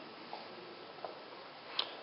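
Quiet hall room tone with a few faint ticks and one sharper click near the end.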